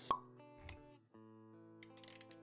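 Animated-intro sound effects over soft background music: a short sharp pop just after the start, a low thud about two-thirds of a second in, and a few light clicks near the end, with sustained music notes underneath.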